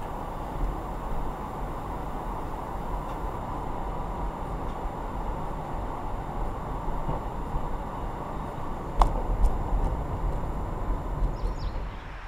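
Car driving across a bridge deck, heard from inside the cabin: a steady rumble of tyres and engine, with a sharp knock about nine seconds in.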